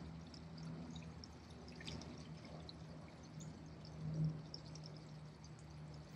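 Faint steady low hum with light trickling and dripping water, the circulation of the swimming pool beside the mat; a soft swell about four seconds in.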